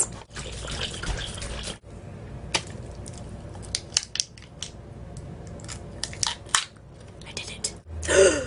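A series of light clicks and knocks, irregularly spaced, from objects being handled.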